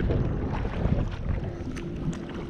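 Strong wind buffeting the microphone, a rumbling noise that eases a little after the first second, over choppy lake water washing against the bank.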